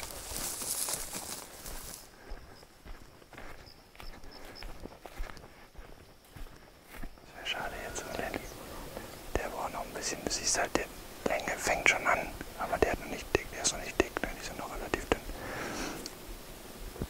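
Hushed whispering, with rustling and crackling of dry grass and brush as people move on foot. A quieter spell a few seconds in, then sharp clicks and crackles thicken from about halfway.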